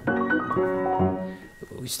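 Grand piano played: a quick handful of notes struck in the middle register, ringing and fading, with a lower note about a second in.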